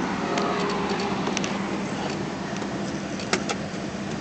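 Steady hum of a 2008 Cadillac Escalade ESV sitting with its engine running at idle and its climate fan on. A couple of light clicks come about a second and a half in and again near the end.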